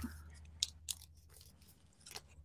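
Faint crinkling and crackling of origami paper being creased and folded, with a few sharp crinkles around the middle.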